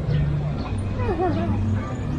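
Voices of people talking along a busy park path, over a steady low hum. About a second in there is a short, high, wavering whine.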